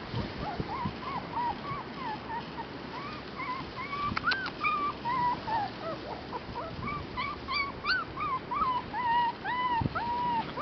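Red Shiba Inu puppy whimpering: a steady string of short, high whines, each rising and falling in pitch, about two a second.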